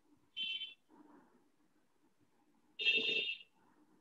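Two short electronic notification beeps, a brief one just after the start and a louder, longer one about three seconds in.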